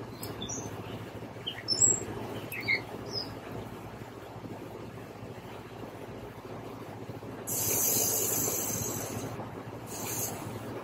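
Small birds chirping in short, falling notes during the first few seconds over a steady low background rumble. About seven and a half seconds in, a loud high hiss starts suddenly and fades away over about two seconds.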